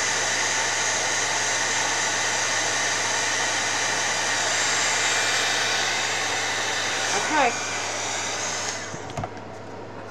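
Handheld heat gun blowing steadily, a continuous rushing hiss of hot air from its fan, which cuts off about a second before the end.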